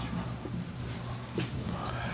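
Dry-erase marker writing on a whiteboard: a faint scratchy rubbing with a few light ticks, over a steady low room hum.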